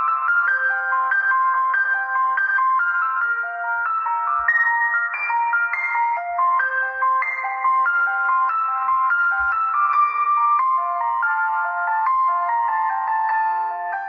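Background piano music: a gentle melody of single notes stepping along in the high register, with no bass line.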